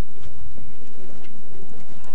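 Microphone handling noise: low, irregular rumbling thumps and a few faint clicks as a body-worn microphone rubs and knocks while the wearer moves.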